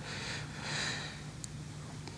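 A soft breath drawn in between sentences, a short, faint rush of air, over the low steady hum of a quiet studio.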